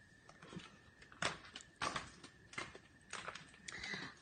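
Footsteps on a gritty concrete floor: about five irregular steps at walking pace.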